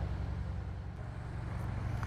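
Low, steady hum of a car engine idling in the background of the workshop.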